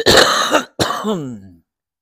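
A man coughing twice, harsh throat-clearing coughs; the second trails off with a falling voice sound.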